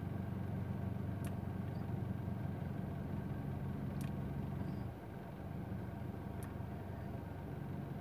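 Car engine idling, heard from inside the cabin as a steady low hum that eases slightly about five seconds in. A few faint clicks.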